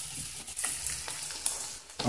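Dumplings frying in shallow hot oil in a frying pan, a steady sizzle.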